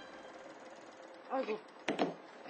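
A single sharp click near the end as the controls of an electric fan with a broken-off button are worked by hand, over a faint steady hiss. A brief vocal murmur comes about a second and a half in.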